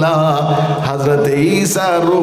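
A man's voice chanting sermon phrases in long, melodic sung lines with a wavering pitch, over a steady low hum.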